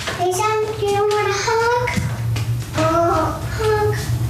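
Young children's high, sing-song voices calling out short, drawn-out phrases to each other, over a steady low hum.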